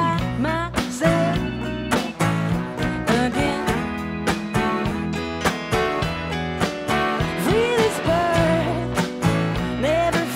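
Live band playing a country-blues style song: acoustic guitar, electric guitar, bass, keys and drums over a steady beat, with a lead melody that bends and slides in pitch.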